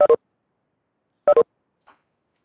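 Two short electronic two-note chimes about 1.3 s apart, each stepping down in pitch: a video-call notification sound as participants leave the online class.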